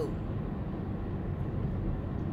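Steady low rumble of a car's road and engine noise heard inside the cabin while driving.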